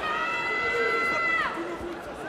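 A person shouting one long, high-pitched call, held for about a second and a half before the pitch drops away, over the noise of an arena crowd.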